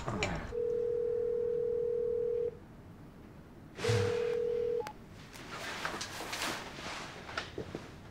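Telephone line tone: one steady pitch held for about two seconds, then after a short gap sounding again for about a second before cutting off. Faint rustles follow.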